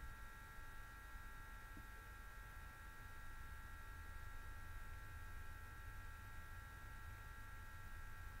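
Quiet room tone: a steady electrical hum of several high tones over a low rumble, unchanging throughout, with no other sound.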